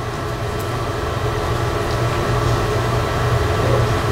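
A steady low hum, with no speech, from machinery or ventilation in the room.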